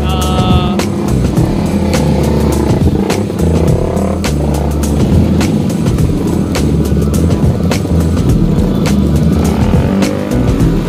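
Background music with a steady beat, mixed with the engines of a line of sport motorcycles and scooters riding slowly past, their revs rising and falling.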